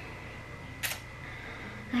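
A single short, sharp click a little under a second in, over a quiet steady background hum with a faint constant high tone.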